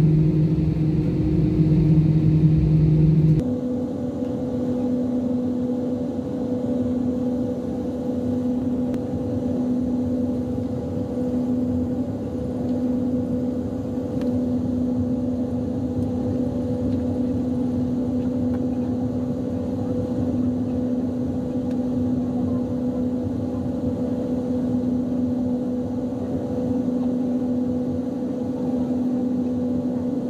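Jet airliner's engines humming steadily, heard inside the cabin while the plane taxis, with a constant low drone. About three seconds in, the hum switches abruptly to a slightly higher, somewhat quieter drone.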